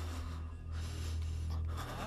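Film background score: a steady low drone with a scratchy, hissing texture above it, between passages of music.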